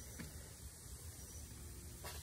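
Quiet room tone: a steady low hum and faint hiss, with a faint brief handling sound about a quarter second in as silicone molds are moved on the table.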